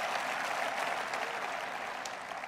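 Audience applauding, slowly dying away.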